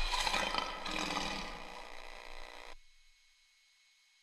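Closing logo sting: music with a lion's roar, fading away and cutting off suddenly a little under three seconds in.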